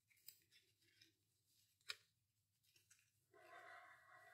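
Near silence, broken by two faint clicks of paper and ribbon being handled, the second one sharper.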